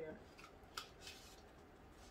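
A few short, faint rustles in the first second as a small cloth pouch is handled and fingers dig inside it.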